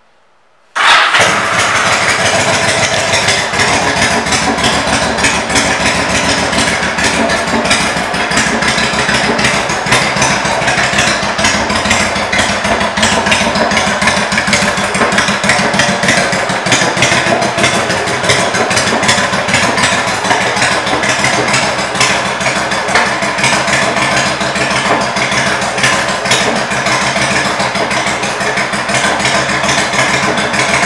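A 2006 Yamaha V-Star 1100 Classic's air-cooled V-twin starts about a second in and then idles steadily through its aftermarket Cobra exhaust pipes.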